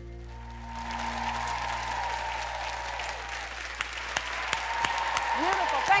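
Studio audience applause building from about a second in, with cheering near the end, while the band's last low note rings underneath and cuts off at the close.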